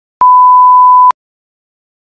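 Colour-bars test tone: one loud, steady, pure beep lasting about a second, starting and cutting off abruptly.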